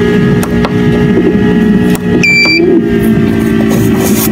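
Egg incubator running with a steady mechanical hum, and one short electronic beep from its control panel a little over two seconds in as a button is pressed.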